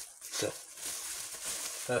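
Plastic bubble wrap crinkling and rustling steadily as it is handled and pulled open. There is a short voiced grunt about half a second in.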